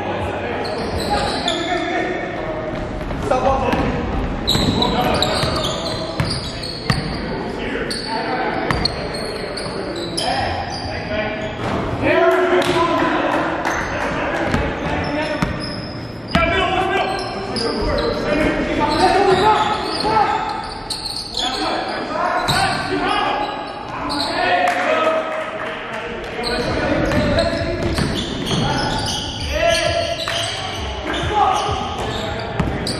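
A basketball bouncing on a hardwood gym floor, with indistinct players' voices echoing in a large hall.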